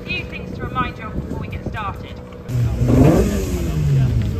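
People talking among a crowd of rally spectators, then, after a sudden cut, a Ford Fiesta R5 rally car's engine running with a short rev that rises and falls.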